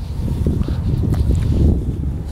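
Wind buffeting a clip-on microphone: a low, uneven rumble that swells about a second in, with a few faint clicks.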